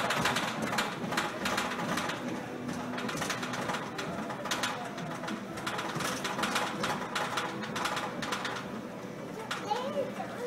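Coin-operated kiddie horse ride running, with a dense, rapid clatter.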